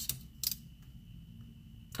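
Fingers handling a paper sticker on a planner page: two short, soft clicks, the second about half a second in, over faint room hum.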